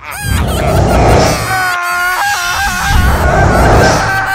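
Cartoon sound effects: two long, loud swells of deep rumbling noise, with a short honk-like tone that steps up and down in pitch in between.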